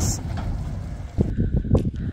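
Wind buffeting the microphone over the low rumble of a tractor towing a silage trailer. The sound changes abruptly about a second and a half in.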